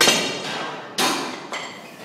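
Two sharp metal clanks about a second apart, each ringing briefly and fading: a loaded barbell being set down and bars changed between drops of a curl dropset.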